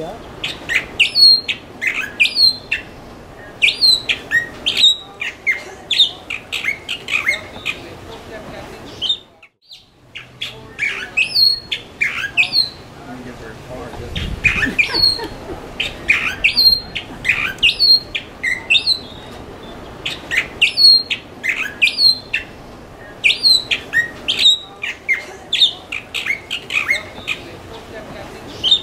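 Galapagos mockingbird singing: phrases of short, high notes repeated every second or two, with a brief break about nine seconds in.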